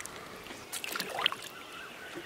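Water splashing as hands dip into shallow river water, with a few short splashes and drips clustered about a second in.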